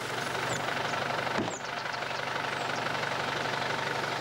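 Nissan pickup truck's engine running steadily as it drives off on a dirt road, with a single short knock about a second and a half in.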